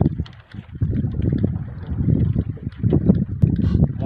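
Wind buffeting the microphone in uneven gusts, a low rumble with scattered faint clicks and knocks.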